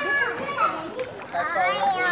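Voices: children calling and chattering, high-pitched, mixed with people talking.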